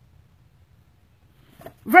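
Near silence, then a woman's voice starts speaking near the end.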